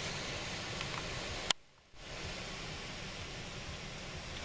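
Steady hiss of background noise. About one and a half seconds in there is a click and a brief moment of near silence, and then the hiss resumes.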